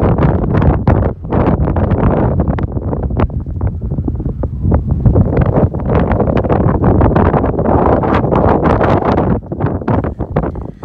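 Strong mountain wind buffeting the camera's microphone: a loud, gusty rumble that surges and drops irregularly.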